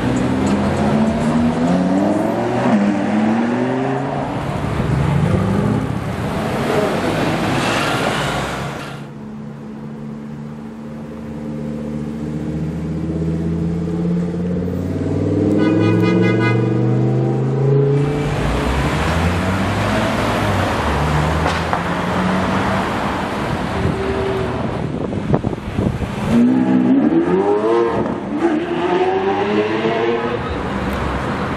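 Lamborghini Huracán V10 engines accelerating away through city traffic, the revs climbing again and again through the gears. There are several loud passes, with a quieter stretch in the middle.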